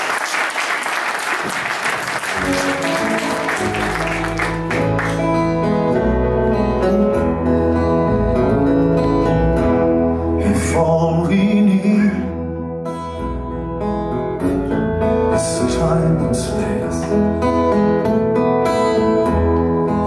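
Audience applause fading over the first few seconds as a live band starts the instrumental intro of a song, with acoustic guitar and electric bass guitar playing.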